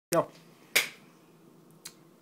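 A sharp click a little under a second in, the loudest sound here, then a fainter click near the end.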